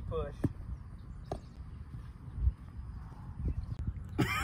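Wind rumbling on the microphone, with a voice trailing off at the start and two sharp clicks about half a second and a second and a half in.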